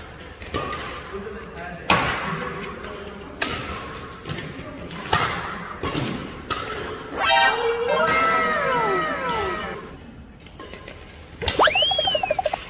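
Badminton rally: the shuttlecock is struck with sharp racket hits about every one and a half seconds. About seven seconds in, an added cartoon sound effect of falling tones plays, and near the end a quick rising-then-falling whistle-like effect.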